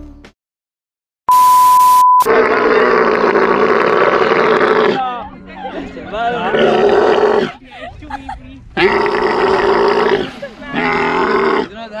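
A short, loud, steady beep about a second in, then dromedary camels bellowing: long, loud, gurgling groans in several bouts, the last ones near the end.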